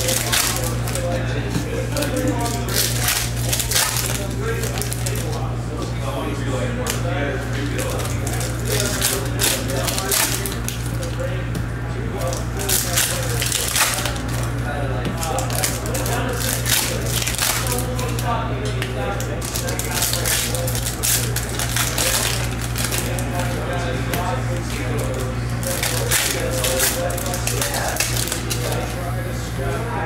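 Foil trading-card pack wrappers of Topps Chrome Sapphire baseball packs crinkling and tearing open, and the cards being handled and shuffled, as many short crackles over a steady low hum.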